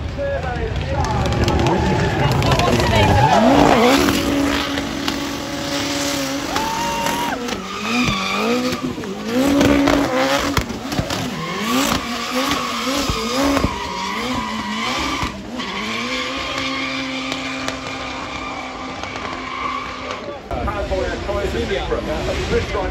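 Drift car engine revving hard while its tyres squeal and skid through a long smoky slide. The engine note climbs steeply about three seconds in, then holds high, with repeated throttle blips and a steadier stretch near the end.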